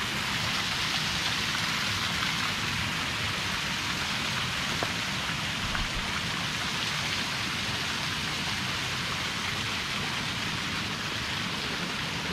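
Shallow stream water running steadily over rocks and stones, an even rushing hiss with no breaks.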